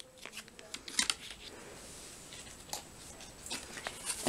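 Foil ration pouches crinkling and rustling as they are handled on a table: faint crinkling with a few sharper crackles, one about a second in and another near three seconds.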